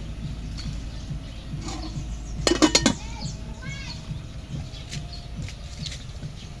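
Metal cooking pot clattering against metal, a quick run of ringing clinks about two and a half seconds in.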